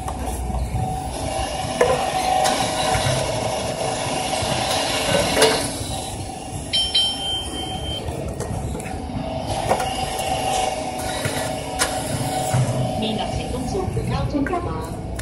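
Steady mechanical hum and low rumble with scattered clicks, and a short high electronic beep about seven seconds in.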